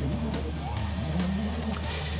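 Ford Fiesta RS WRC rally car's turbocharged four-cylinder engine running as the car drives by, with background music under it.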